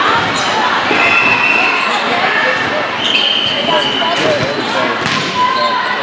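Echoing indoor volleyball hall: many voices talking and calling out at once, with sharp thuds of volleyballs being hit and bounced. Two short, steady high-pitched tones sound about one and three seconds in.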